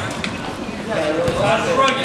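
Onlookers shouting encouragement at a wrestling bout, "let's go", with a few short knocks underneath.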